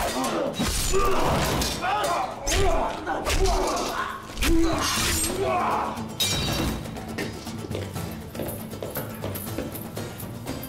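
Sword-fight sound effects: blade clashes and heavy blows, with men's grunts and cries, over dramatic film score. The fighting sounds are dense in the first six seconds, then die away, leaving the music quieter.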